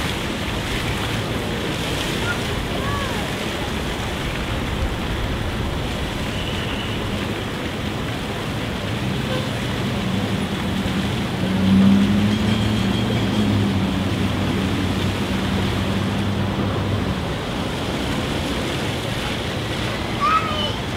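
Splash-pad fountain jets spraying and splashing steadily, with water noise throughout. A low engine-like hum swells in about halfway through, is loudest a few seconds later, and fades out again.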